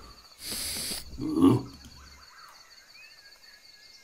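Cartoon monkey vocalization for an animated puppet: a short breathy hiss, then one loud low grunt about a second and a half in. After it, only faint high chirping ambience.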